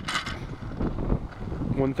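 Wind buffeting the microphone as a low, steady rumble, with a short knock right at the start and a man's voice near the end.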